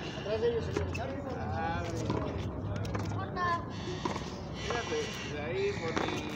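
Men's voices talking and calling out, with a few sharp knocks from the ball being struck by rackets and hitting the wall during a rally.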